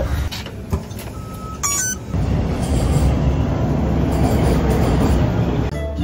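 A short electronic beep, then from about two seconds in the steady, loud running noise of a subway train, which stops just before the end.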